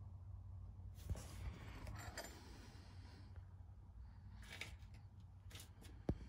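Faint rustling and rubbing in two stretches, with a light click about a second in, over a low steady hum: handling noise from someone moving about in a tight space under a truck.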